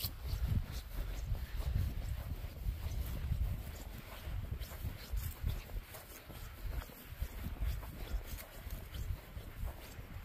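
Footsteps of two people walking across a mown grass field, with an uneven low rumble underneath.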